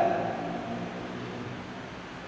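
A pause in a man's talk: the tail of his last word dies away in the first half second, leaving the steady low hum and hiss of room tone.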